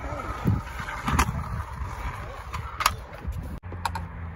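Stunt scooter wheels rolling on concrete with a steady low rumble, broken by several sharp clacks.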